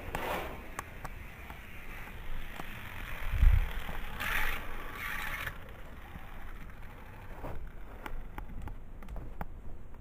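Hot Wheels Fast-Ism die-cast car rolling along a long orange plastic track: a faint running rattle with scattered sharp clicks. A low thump comes about three and a half seconds in.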